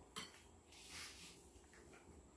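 Faint kitchen handling: a spoon clicks once against a glass mixing bowl just after the start, then gives a short, soft scrape as it stirs icing sugar into butter.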